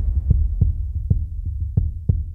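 Film-score music: a deep sustained drone with soft low thuds pulsing over it at an uneven pace, about three a second, after a held chord has faded out.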